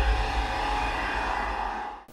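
Intro sound effect: a sustained, whooshing tone over a deep low rumble that fades away near the end.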